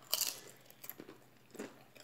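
A person biting into crunchy food held in the fingers: one loud crunch just after the start, then a few faint chewing clicks.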